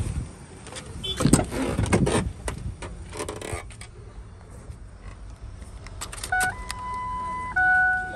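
Rustling and clicking handling noise with a jangle of keys, then from about six seconds in a steady electronic tone that jumps up in pitch and back down again about a second later.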